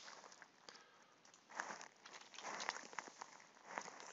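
Quiet room noise at a desk microphone: soft, rustly hiss with a few light computer-mouse clicks.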